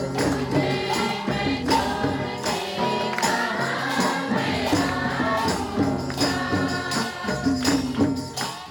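Group of women singing a Hindi Christian devotional song in chorus, with a steady percussion beat and hand claps.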